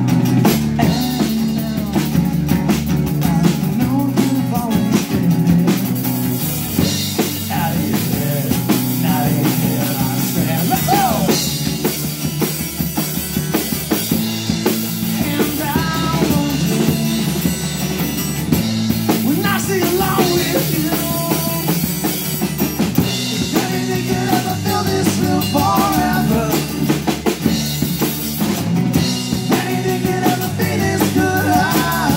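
Live duo of strummed acoustic guitar and a full drum kit playing a rock song, the kick and snare driving a steady beat, heard through a small PA.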